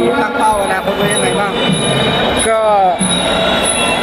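Voices talking over a loud, busy background, with pitched sounds sliding up and down and a strong sliding tone about two and a half seconds in.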